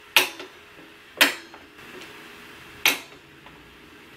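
Sewing machine's switch being flipped: three sharp clicks, each followed by a short ringing tail.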